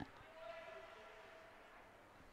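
Faint ice-rink ambience with a distant voice carrying in the hall, and one sharp knock at the very start.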